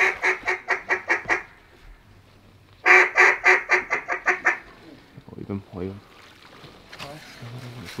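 A mallard duck call blown in two quick runs of about ten loud quacks each, every run fading away note by note in the hen mallard's descending quack series. Softer, lower calls follow in the second half.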